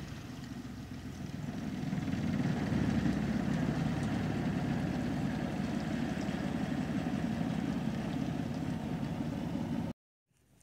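A small boat engine running steadily. It gets louder about two seconds in and cuts off suddenly near the end.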